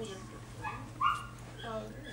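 A short, high-pitched yelp about a second in, after a couple of fainter squeaks, followed by a spoken 'uh'.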